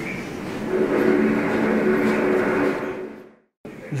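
Newsreel soundtrack played through a TV: a loud, steady rumbling noise with low held tones underneath, fading and then cut off abruptly a little past three seconds in.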